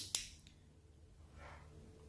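Inline power switch on a Raspberry Pi's power cable clicked to switch the board on: two sharp clicks close together, then quiet.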